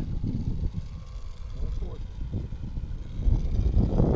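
Wind buffeting the microphone: a gusty low rumble that swells near the end, with faint voices in the background.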